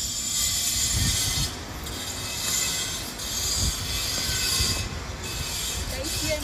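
Wind buffeting a phone's microphone outdoors, with irregular low rumbling over a steady hiss that drops out briefly twice.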